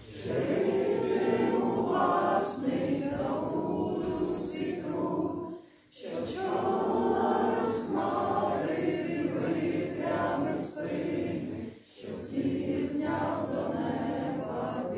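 A group of people singing together, in long phrases with two short breaks, about halfway through and again near the end.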